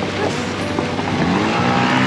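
Boat motor running steadily, with voices singing coming in near the end.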